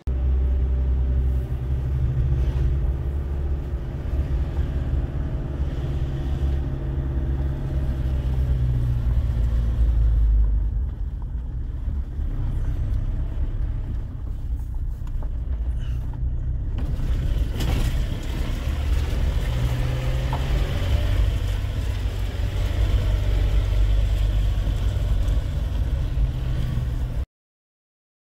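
Car driving, heard from inside the cabin: a steady low engine and road rumble with slowly shifting engine tones. A hiss of higher noise joins about two-thirds of the way through.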